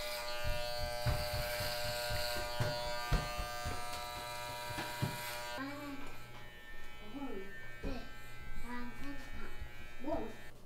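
Electric hair clippers buzzing steadily as they trim short hair at the sides of the head, switching off about five and a half seconds in. Quiet voices follow.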